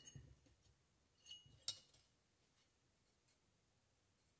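Near silence with two faint, short metallic clicks about a second and a half in, from handling a valve spring and its small keeper on a Kohler Courage engine's cylinder head.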